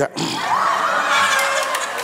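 Studio audience laughing after a punchline, a steady mass of many voices.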